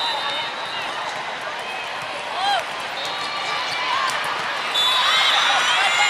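Sports-hall ambience during a volleyball match: sneakers squeaking on the court floor in short chirps, the loudest about two and a half seconds in. Steady high whistle blasts sound a few seconds in and again, longer, from about five seconds in, over crowd chatter.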